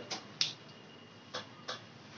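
Four short, sharp clicks over a quiet room: two close together near the start, the second the loudest, and two more past the middle.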